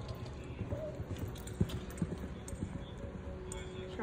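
Hoofbeats of a horse cantering on arena sand, a run of muffled thuds that are strongest between about one and a half and three seconds in.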